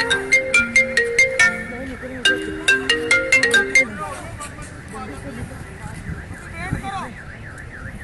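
A mobile phone ringtone: a quick electronic tune of short, clipped notes stepping up and down, playing for about four seconds and then stopping, leaving faint background noise and voices.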